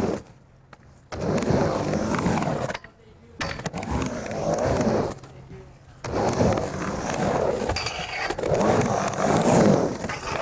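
Skateboard wheels rolling and carving back and forth across a halfpipe ramp, in three stretches broken by short quiet gaps.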